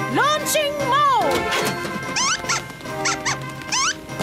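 Cartoon mole's squeaky calls: a run of sliding squeaks, then quick high rising chirps in the second half, over background music.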